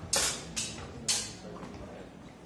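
Steel training longswords striking in a close exchange: two sharp metallic impacts about a second apart, each with a brief ring-out.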